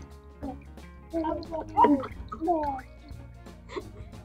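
Liquid soap gurgling as it is poured from a cup into a plastic bottle, under women's voices talking and background music.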